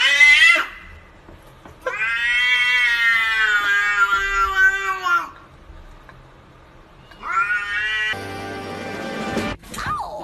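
Domestic cats yowling at each other: a rising call that ends about half a second in, a long drawn-out yowl of about three seconds, then a shorter call that rises in pitch.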